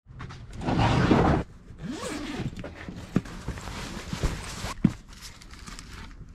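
Zipper on a large gear bag pulled open: a loud rasp about a second in, then a quieter run of zipping that rises and falls in pitch, followed by rustling and a couple of light knocks as the bag is opened up.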